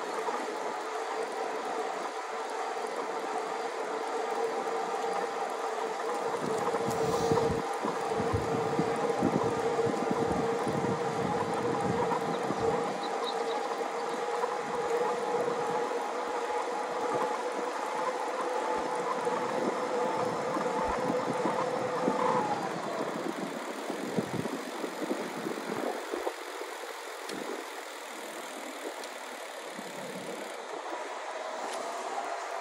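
Yamaha YPJ-TC e-bike's mid-drive assist motor whining at a steady pitch under pedalling, with a low rumble from about 6 to 14 seconds in. The whine bends briefly upward and cuts off about 22 seconds in.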